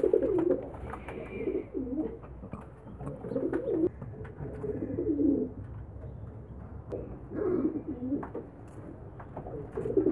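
Domestic pigeons cooing: a run of low coos, roughly one a second, with a longer pause midway.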